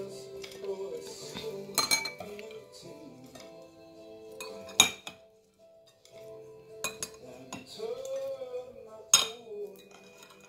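Metal fork and spoon clinking and scraping against a ceramic plate while eating, with several sharp clinks, the loudest about five and nine seconds in. Background music with steady held notes plays underneath.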